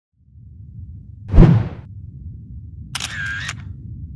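Sound effects for an animated logo intro: a low rumbling drone, a whoosh ending in a deep boom about a second and a half in, then a short bright clicking electronic effect near the three-second mark.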